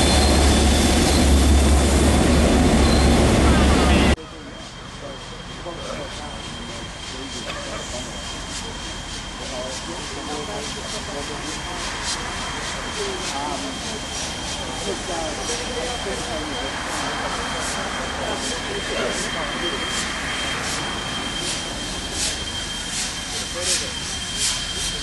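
A diesel locomotive idling with a steady low drone, over crowd voices, for about four seconds. Then a New Zealand Railways Ja class steam locomotive moving slowly, its exhaust coming as short sharp puffs over a steady high tone, louder near the end as it nears.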